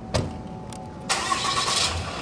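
A sharp knock just after the start, then a vehicle engine cranking and starting, loud for about a second near the end.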